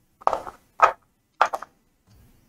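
Casino chips clacking as they are set down and stacked by hand, three sharp clacks about half a second apart.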